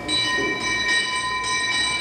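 A church bell ringing in repeated strokes about every half second, its tones ringing on over one another as the Dolores bell is rung in a re-enactment of the Grito. The bell on stage is a paper prop, so the ringing is a recorded bell sound.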